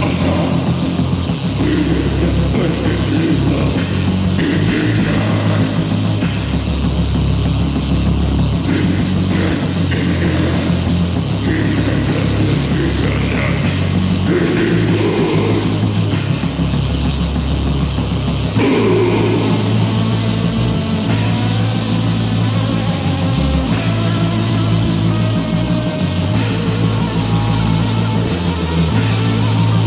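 Heavy metal band playing distorted electric guitars and bass on a lo-fi demo recording, loud and dense throughout, with an abrupt change of riff about two-thirds of the way through.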